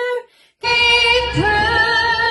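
A woman singing unaccompanied holds one long steady note, which cuts off about a quarter second in. After a half-second gap, another woman's voice comes in singing into a microphone, rising in pitch about a second and a half in.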